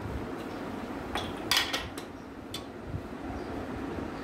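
A handful of sharp metal clinks and knocks, the loudest about one and a half seconds in, from handling an opened aluminium pressure cooker and its lid, over a steady low background noise.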